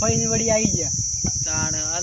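A steady, high-pitched insect drone that runs on without a break.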